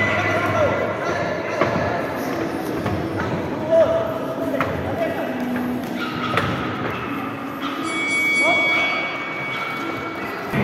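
Indistinct voices echoing in a large sports hall around a boxing ring, with a few sharp thuds from the ring, the loudest a little under four seconds in.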